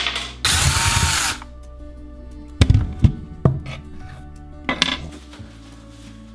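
A cordless drill-driver runs for about a second, backing screws out of a wall-mounted shelf unit, followed by several sharp knocks as the unit is worked loose and taken down.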